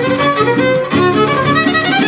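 Son huasteco trio playing an instrumental huapango passage: a violin melody over rhythmic strummed chords from the jarana huasteca and huapanguera.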